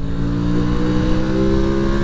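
A 2021 Aprilia RS 660's parallel-twin engine running steadily on the move, its pitch climbing slowly as the revs build under light throttle.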